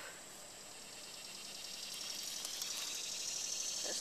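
A high, shrill buzzing of insects in the surrounding grass and trees, swelling steadily louder over the seconds.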